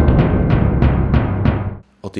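News bulletin transition jingle: a fast run of drum strikes, about six a second, with a held brass note fading beneath. It cuts off sharply just before the narration resumes.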